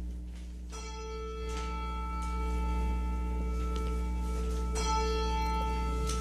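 Slow instrumental music of single struck, bell-like notes a second or more apart, each ringing on and overlapping the next, over a steady low hum.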